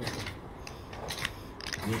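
A few light, scattered clicks and taps from handling at a poker table, with a man's voice starting near the end.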